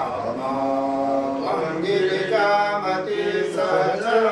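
Mantra chanting: a voice intoning Sanskrit verses in long, held, sung notes that step from pitch to pitch.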